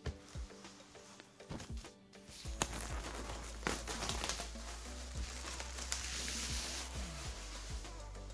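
Thin plastic shrink-wrap being peeled off a cardboard box, crinkling, with a few sharp clicks at first and a dense, steady crackle from about two and a half seconds in until near the end. Background music plays throughout.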